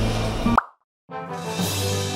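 Background music that ends about half a second in with a short rising pop sound effect. A half-second gap of silence follows, then a new music cue of held chords starts.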